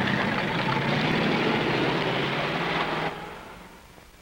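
A 1950s car's engine running as the car pulls away, a steady low hum under road noise. It drops off sharply about three seconds in and fades out.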